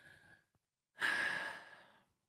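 A woman's breathy sigh: a faint breath in, then about a second in, an audible exhale that lasts about a second and fades away.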